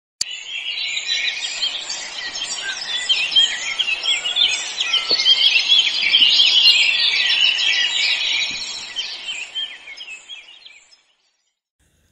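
A flock of birds chirping, many short calls overlapping at once, fading out about a second before the end.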